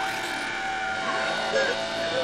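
Electronic music: a dense layer of steady synthesizer tones, with short gliding pitches coming in near the end.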